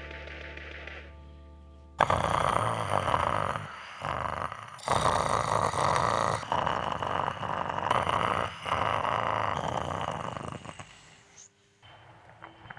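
A man snoring loudly in long bouts with brief breaks, starting about two seconds in and stopping shortly before the end. Before it come a couple of seconds of sustained musical tones.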